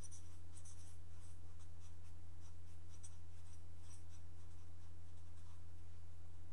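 Felt-tip marker writing on paper: a run of faint, short scratchy strokes as words are written out, over a steady low electrical hum.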